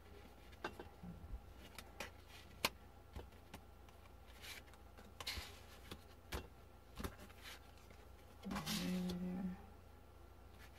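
Tarot cards being laid down and slid about on a cloth-covered table: scattered soft taps and clicks with a few brushing swishes. Near the end there is a short hum of the voice, about a second long.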